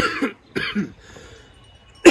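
A man clearing his throat in two short, harsh coughs within the first second.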